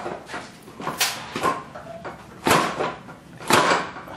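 Folding electric wheelchair's rear alloy wheel being worked off its hub-motor axle: a few knocks and scrapes of wheel against axle and frame. The two loudest come about two and a half and three and a half seconds in.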